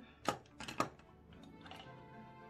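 A quick run of sharp taps and knocks in the first second as makeup tools are put down and picked up on a tabletop, with soft background music under them.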